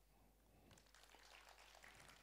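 Near silence: quiet hall room tone with faint scattered light ticks from about half a second in.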